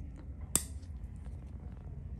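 Stainless steel nail nippers biting through a thick, crumbly toenail, with one sharp snap about half a second in and a few faint ticks after it.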